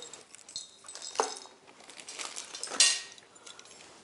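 Chrome lockable deck filler caps handled in the hands: a few light metallic clinks and clicks. The loudest comes near the end of the third second, with a short ring.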